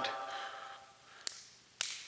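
A sung note dies away in the church's reverberation, then two crisp snaps come about a second and a half in, the second louder. These are the large altar bread (host) being broken at the altar.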